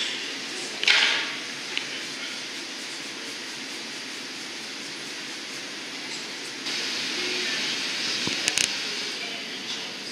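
Steady hissing roar of a glassblowing hot shop's gas-fired burners. A short, louder hiss comes about a second in, the roar grows louder about seven seconds in, and a few light metal clinks follow shortly after.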